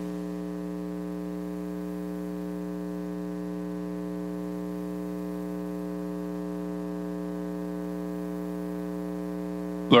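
Steady electrical mains hum, a constant buzzing drone from the sound system with no change in pitch or level.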